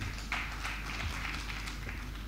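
Faint footsteps on a stage, a few irregular light taps, over a steady low hum from the hall's sound system.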